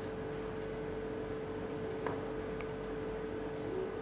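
Quiet room tone with a steady hum. About two seconds in, two faint ticks of a marker tip dotting points on a whiteboard.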